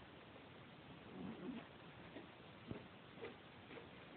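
Tabby cat scooping food out of a small glass dish with its paw. It gives a brief low call about a second in, then there is a sharp click against the glass and a few faint clicks as it eats from its paw.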